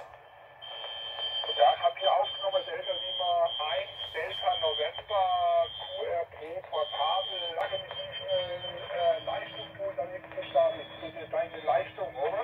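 A distant amateur station's voice received on the uSDX QRP transceiver and heard through its small speaker: thin, band-limited speech over hiss. A steady high tone sits under the speech through the first half, and a steady low tone joins it in the second half.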